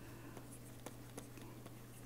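Faint scratching and a few light ticks of a stylus writing by hand on a pen tablet, over a steady low electrical hum.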